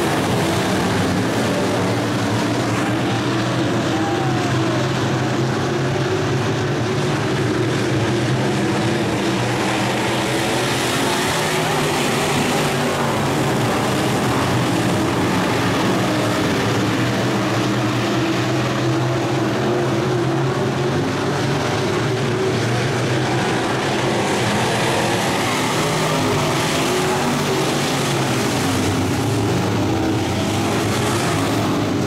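A pack of dirt-track sport modified race cars' V8 engines running hard at racing speed, a loud, continuous engine sound that swells and eases slightly as the cars circle the oval.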